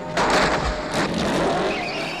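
Motorcycle burnout: the engine revving while the rear tyre spins and squeals on asphalt. It starts suddenly, loud and noisy.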